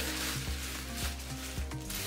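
Bubble wrap rustling and crinkling as a wrapped glass item is unwrapped by hand.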